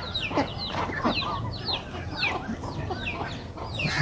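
Chickens calling in a flock: many short, high peeps that fall in pitch, several a second, with softer clucking among them.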